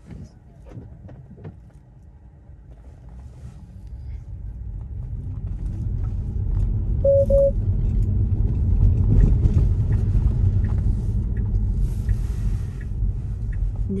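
Tyre and road noise inside a Tesla's cabin on a wet road, a low rumble that grows as the car picks up speed from about four seconds in and peaks around nine seconds. A short double beep from the car sounds about seven seconds in, and a brief hiss follows near the end.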